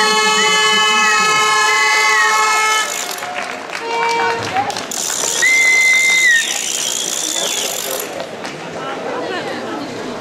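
Spectators applauding and cheering in two bursts. The first carries a long steady held tone and stops about three seconds in; the second runs from about five to eight seconds in.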